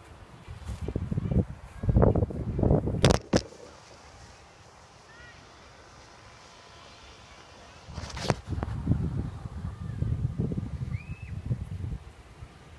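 Handling noise from a phone being moved about: low rumbling broken by sharp knocks, two close together about three seconds in and one more about eight seconds in, with a quiet stretch between.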